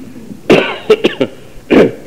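A person coughing, a few short coughs in a row, loudest about half a second in and again near the end.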